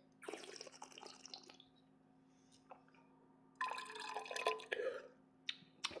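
A mouthful of red wine being slurped and swished in the mouth to taste it, drawing air through the wine: two wet, bubbly spells, each about a second long, a few seconds apart.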